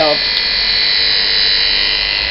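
Electric dog-grooming clippers running steadily: an even, constant motor whine.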